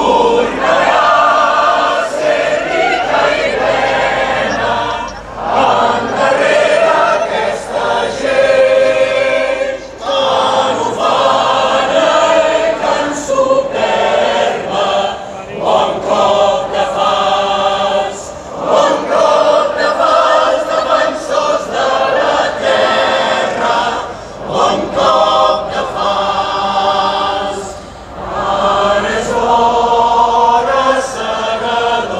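A large choir singing a song, many voices together in long phrases with short breaks between them.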